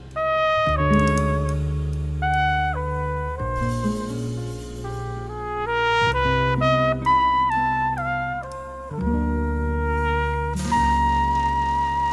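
Jazz quartet recording: a trumpet plays a melody moving note by note in short steps over long held low bass notes.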